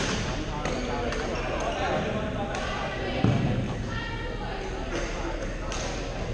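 Badminton rackets striking a shuttlecock in a large reverberant sports hall: sharp pops several times over, some from neighbouring courts, over a steady background of voices. A heavier low thump, the loudest sound, comes a little past three seconds in.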